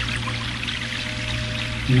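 Soft background music with a steady low drone under a sound of running water. A man's voice comes back in right at the end.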